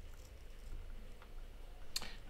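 Quiet low hum with a few faint, small clicks as the steel body of a 4.4 mm headphone jack is handled and slid onto the plug.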